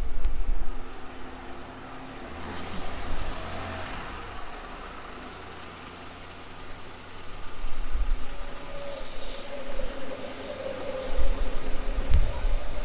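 A V set double-deck intercity electric train rumbling on the line overhead, with a steady whine coming in after about eight seconds. Bus engines pull away close by.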